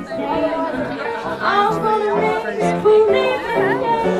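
Small live jazz band playing vintage hot jazz, with piano and double bass under a lead line that bends and slides in pitch, and voices talking in the room.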